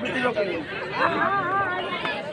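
Several voices talking and calling out at once over the murmur of a crowd.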